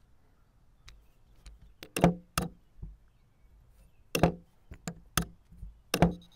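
Plastic chess pieces set down on a board on a wooden table and chess clock buttons pressed in quick alternation during a blitz time scramble: a series of sharp, separate knocks.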